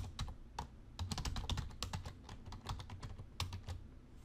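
Computer keyboard keys clicking as a password is typed, the keystrokes coming in quick, uneven runs.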